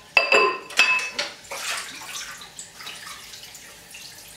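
Dishes being washed by hand in a kitchen sink. Two sharp clinks of crockery, each ringing briefly, come near the start, followed by softer water sounds and small knocks as things are rinsed.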